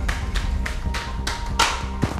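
Quick footsteps on hard stairs, about four or five taps a second, over a low, steady drone of background music.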